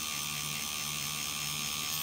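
Pen-style rotary tattoo machine buzzing steadily as its needle works black ink into the skin.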